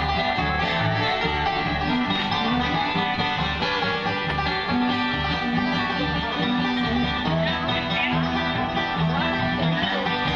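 Live acoustic string band playing an upbeat tune: acoustic guitar strumming over a plucked upright bass line with a steady beat.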